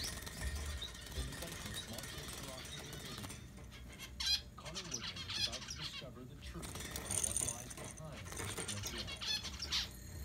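A young pet bird chirping in several short bursts.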